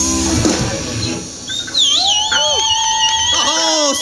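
A live rock band's song ends, its last guitar chord ringing out and fading. A wavering, high-pitched whistle and gliding shouts follow.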